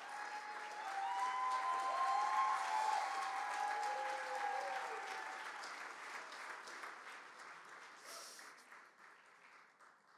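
Audience applauding, swelling over the first seconds and then dying away toward the end.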